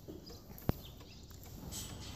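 Faint, quiet barn background with a single sharp click about two-thirds of a second in.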